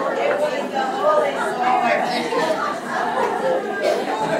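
Indistinct chatter: several voices talking at once, with no single clear speaker.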